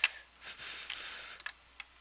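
A person's breath close to the microphone: a hissing exhale from about half a second in to just past one second, with a few sharp clicks before and after it.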